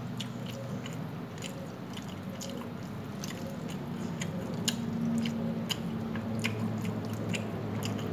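Close-up chewing of rice and chicken curry, with many small irregular wet mouth clicks. A steady low hum runs underneath and grows louder near the end.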